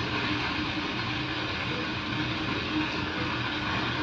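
Fast-flowing muddy floodwater rushing past, a steady, even noise with no let-up.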